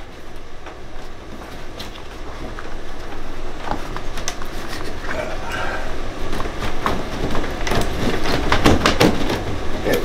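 Stiff white plastic vent elbow being twisted and pulled loose from a tankless water heater's vent collar: scraping and creaking of plastic on plastic with many small clicks, getting louder in the second half as the tight fitting gives.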